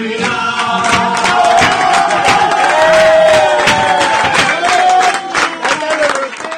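A group of people singing along loudly to an acoustic guitar, with hand claps keeping time.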